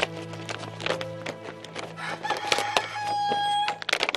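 A rooster crowing once, a held call of about a second and a half starting about two seconds in, over background music with a steady low drone.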